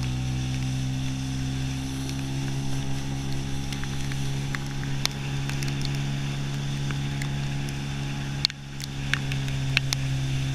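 Outboard motor driving a hydrofoil boat at a steady speed, one even engine note throughout. About eight and a half seconds in there is a sharp knock, the sound drops away for a moment, and a couple more clicks follow near the end.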